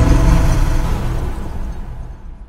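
Low rumble of a cinematic logo sting, with a hiss above it, dying away as the sting's musical tones stop.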